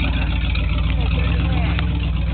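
Truck engine idling close by, a steady low rumble with an even pulse.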